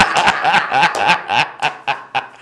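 Two men laughing loudly together, a rapid run of ha-ha's.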